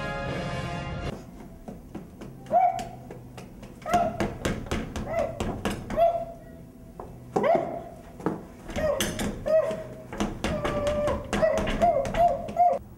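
Sustained orchestral music cuts off about a second in. Then a person in a gorilla costume pounds on a door with repeated thuds and makes short ape-like hoots and grunts, which grow busier toward the end.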